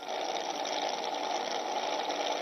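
A steady, even mechanical running noise like a small motor or engine. It starts suddenly and holds level without breaks.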